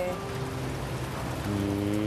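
Soft background music with long held notes over a steady hiss like rain.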